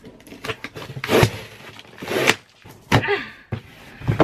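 A cardboard shipping box being torn open by hand: three loud rips about a second apart, with smaller clicks and rustles of cardboard between them.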